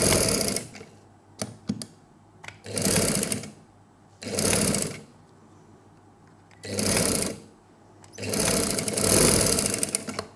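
Sewing machine stitching in five short runs with pauses between, the last and longest near the end, and a few light clicks between runs.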